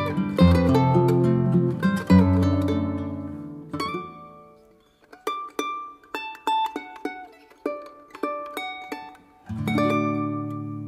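Andean instrumental music on charango with guitar: plucked chords over low bass notes, thinning about halfway to single high plucked notes, with a low chord coming back in near the end.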